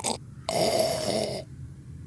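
A person sipping from a mug, one slurping sip lasting about a second.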